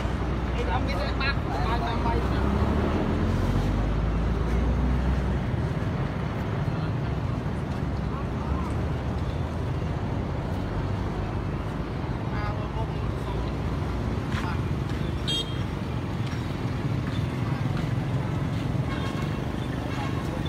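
Roadside traffic noise with a crowd's chatter. A heavy low vehicle rumble fades out about five seconds in, and a brief horn toot sounds about fifteen seconds in.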